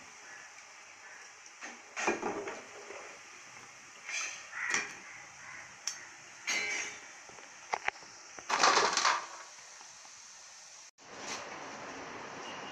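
Chicken pieces frying in hot oil in a steel pot, with a steady sizzle, while a slotted steel ladle scrapes and clinks against the pot and a wire-mesh strainer several times, the loudest clatter about three quarters of the way through. Near the end the sound cuts out briefly and gives way to a plain, even hiss.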